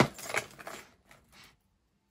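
Costume jewelry pieces clinking and jangling as they are handled in a pile: a sharp clink at the start, then lighter clinks that die away about a second and a half in.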